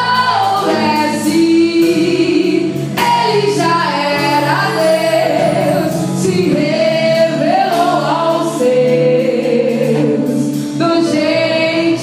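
Live gospel worship music: a woman singing into a microphone over keyboard, drums and bass, with cymbal strokes.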